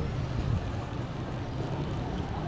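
Steady road and wind noise from riding an electric bike along a paved sidewalk, a low, even rumble.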